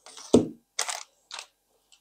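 White plastic fan cables and connectors being picked up and handled on a desk: a knock about a third of a second in, then two short rustles.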